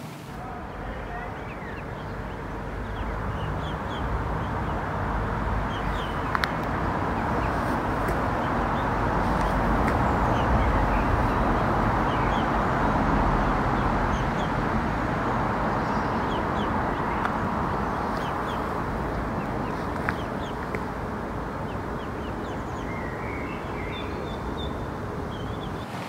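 Faint short calls of a mallard hen and her ducklings on a river, over a steady outdoor noise that swells toward the middle and fades again.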